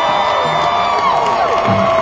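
Long held musical notes from the live band, gliding up into pitch and down again near the end, over a large concert crowd cheering.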